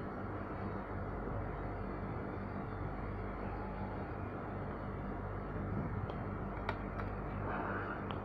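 Hot-air rework station blowing, a steady hiss over a low hum. A few light clicks of tweezers against the circuit board come about six to seven seconds in.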